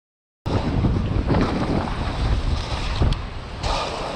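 Wind buffeting a GoPro's microphone as a downhill mountain bike rolls fast over a dirt trail: a heavy rumble with tyre and frame rattle and a sharp click about three seconds in. It starts after about half a second of silence.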